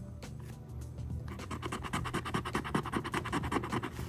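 Scratch-off lottery ticket being scratched, a fast run of short rubbing strokes, several a second, starting about a second in.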